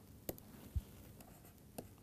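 Faint clicks and light scratching of a stylus writing on a pen tablet, a few short taps spread across the two seconds.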